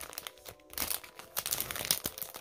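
Clear plastic cellophane sleeve crinkling in the hands as a wrapped handmade shaker card is handled, in quick, irregular rustles.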